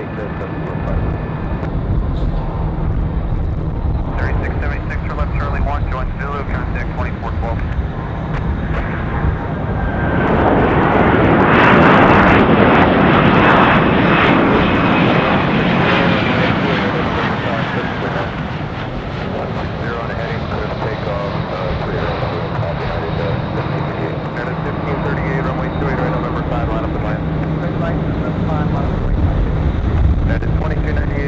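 Jet airliner engines passing close by. The noise swells to its loudest about twelve seconds in, with a whine gliding in pitch, then fades over several seconds, over a steady low hum.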